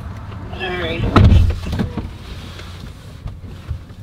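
A short voice sound, then a dull low thump about a second in, followed by light rustling and small clicks inside a car cabin.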